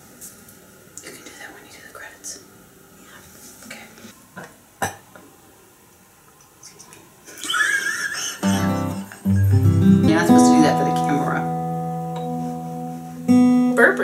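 Acoustic guitar strummed from about eight seconds in, its chords ringing out, with another strum near the end; before that only faint small room sounds.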